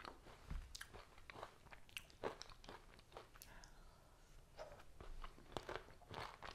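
A person chewing a mouthful of frozen ice cream bar filled with crushed Heath toffee and chocolate: faint, irregular crunching clicks.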